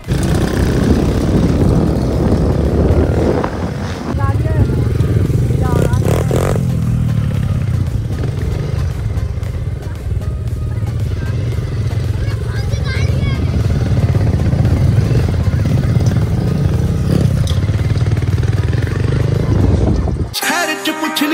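125cc dirt bike engine running as the bike is ridden, loud and close, its pitch stepping up about four seconds in, with people's voices calling out over it at times.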